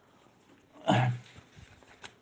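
A man clears his throat once into a close microphone, a short rough cough about a second in.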